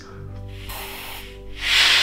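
Breathing through a PowerLung breathing trainer: a softer airy rush of breath through its valves, then a louder hiss of breath from about one and a half seconds in. Faint background guitar music runs underneath.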